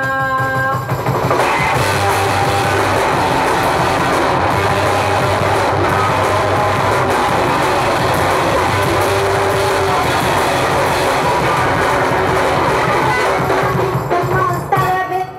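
Rock band playing live and loud, with electric guitars, bass and drum kit in a dense, noisy instrumental passage. A held sung note breaks off in the first second, and the full band comes in with a steady, unbroken level.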